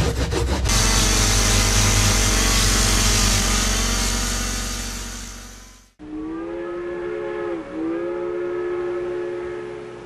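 A saw rasping through foam for a moment, then a loud steady hiss of steam over a low rumble that fades away. After a sudden cut, a steam locomotive whistle blows a long multi-tone note, dipping briefly in pitch about two-thirds of the way through.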